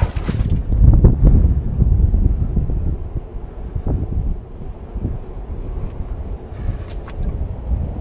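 Wind buffeting the camera microphone: an uneven low rumble, strongest in the first couple of seconds and easing off after.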